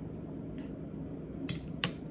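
A metal spoon clinking twice against tableware: two sharp, ringing clinks about a third of a second apart, near the end.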